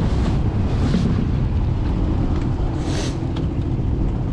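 Jet-drive outboard motor running steadily, with wind buffeting the microphone. A brief hissing gust comes about three seconds in.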